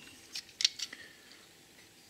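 A few light clicks and taps in the first second as a die-cast toy fire truck is handled and turned over in the fingers.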